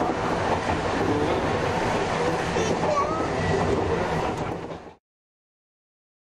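A Randen (Keifuku Electric Railroad) tram running along the track, heard from inside the car: a steady rumble of motors and wheels on rail. It fades out quickly a little before five seconds in.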